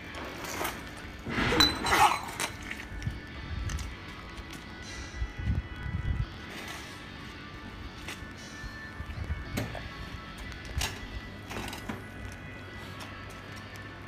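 Scattered clinks and knocks of hose couplings and metal fittings being handled on a steam vapour cleaning machine, a cluster of them about two seconds in and single ones later, over faint background music.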